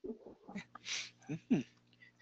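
Faint, brief vocal sounds, quiet murmurs with a short hiss about a second in, far below the level of normal talk.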